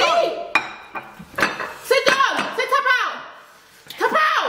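Ceramic plates knocking and scraping against a marble countertop as the plates are cleaned off by hand in a hurry, with a few sharp clacks in the first two seconds.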